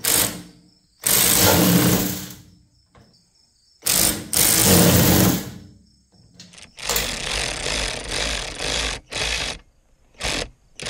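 WorkPro 3/8-inch drive cordless ratchet's motor spinning a socket on caster mounting bolts, in two runs of about a second and a half each with pauses between. Near the end it runs in a quicker string of short bursts.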